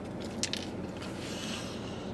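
A person chewing a mouthful of cheeseburger, with two or three sharp wet mouth clicks about half a second in, over a steady low background hum.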